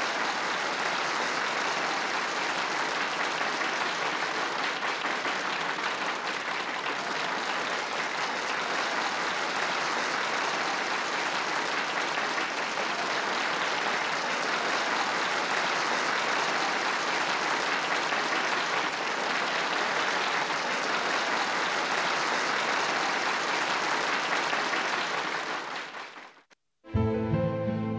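A large audience applauding, a dense, steady clapping that carries on without a break and fades out near the end.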